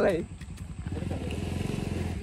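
A motorcycle engine running with a fast, even beat, growing a little louder toward the end.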